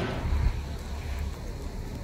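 Low, uneven rumble of wind buffeting the microphone outdoors, strongest in the first second.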